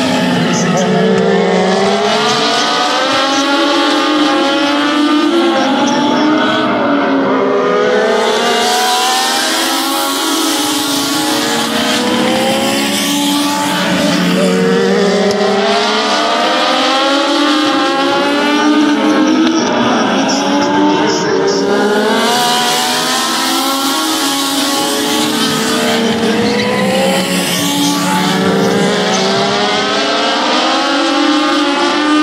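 A pack of Legends race cars running together, their Yamaha motorcycle four-cylinder engines revving high and then backing off, so the combined pitch rises and falls about every six seconds.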